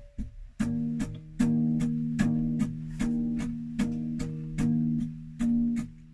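Acoustic guitar strummed in a steady rhythm, the same ringing chord struck a couple of times a second. The first half second holds only light, muted strokes before the full chord comes in.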